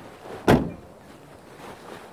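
A car door shutting once: a single sharp bang about half a second in.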